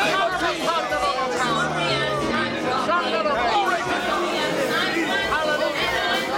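Many voices of a congregation praying aloud at once, overlapping, over steady held chords of church music.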